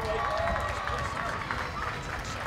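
Men's voices calling and chatting in the background, too faint to make out, over a low rumble and scattered faint clicks.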